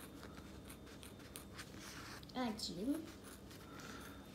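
Small scissors cutting through a leatherette (faux-leather) sheet: a run of quiet, irregular snips and rasps. A brief voice sound comes in about two and a half seconds in.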